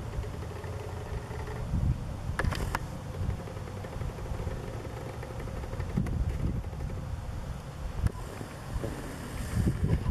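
Low, uneven outdoor rumble, with two short clicks about two and a half seconds in.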